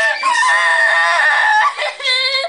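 A woman screaming in a long, high-pitched wail, with a brief break just after the start and the scream trailing off near the end.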